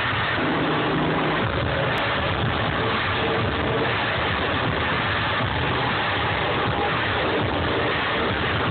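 Loud audio of an intro video played over a club sound system, recorded through a phone microphone and heavily distorted, with a steady low rumble.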